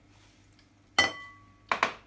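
A single glassy clink of a glass salad bowl about a second in, ringing briefly before it fades, followed by two quick soft knocks near the end.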